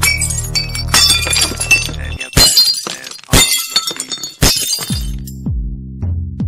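Glass-shattering sound effects, a run of sharp crashes with high ringing shards, over a low synth drone that stops about two seconds in. Near the end an electronic beat comes in, with deep kick drums that drop in pitch.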